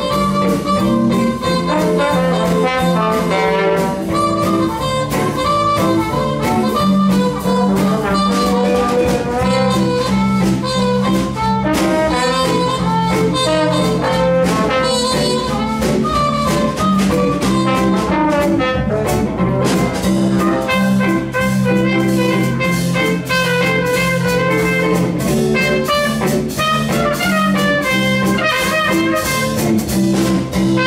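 Small jazz combo playing a swing tune live: trumpet carries the melody over archtop guitar chords, drum kit and trombone.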